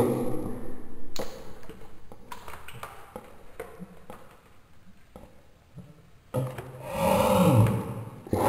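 Sparse, faint plinks and drips of water in a toilet bowl, with a voice fading out at the start and another drawn-out voice sound near the end.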